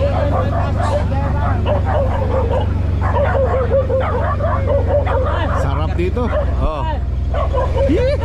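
Engine of an open utility vehicle running steadily while it drives, under a dense run of short, repeated animal calls from the farm, tagged as dog-like barking or yapping.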